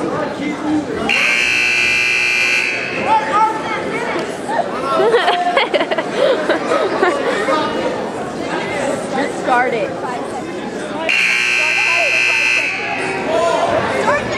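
Gym scoreboard buzzer sounding twice, each steady blast about a second and a half long, the second about ten seconds after the first, over crowd chatter.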